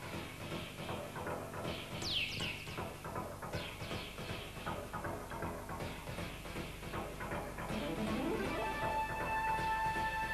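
Rock band playing an instrumental piece live, with keyboards and electric guitar over a busy rhythm section. About two seconds in there is a quick falling pitch sweep, and near the end the band settles into long held notes.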